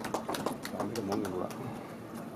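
Faint background voices with scattered light clicks.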